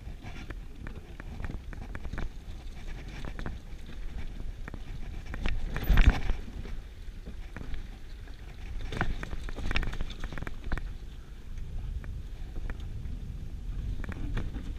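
Giant Full-E+ electric mountain bike rolling over a rocky, gravelly trail: tyres crunching on stones and the bike rattling, with scattered knocks as it drops over rocks, the loudest about six seconds in and a few more around nine to ten seconds. A steady low rumble runs underneath.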